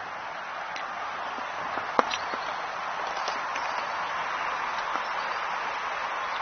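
Steady outdoor background noise with a few scattered light clicks and taps, the clearest about two seconds in, from walking across the yard and handling the recording phone.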